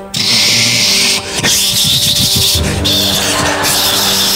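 Keyboard synthesizer playing a rushing-wind sound effect over a sustained synth drone, standing for the air blasting through an open aircraft door. The hiss surges, cuts out about a second in, and returns in the second half.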